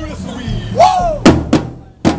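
Marching drums struck together by a group of drummers: a shouted voice call about a second in, then two sharp unison drum hits a moment apart.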